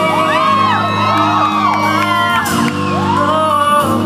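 Live soul band holding a sustained chord on keys, bass and drums while voices whoop and shout over it in many overlapping rising-and-falling calls, tailing off near the end.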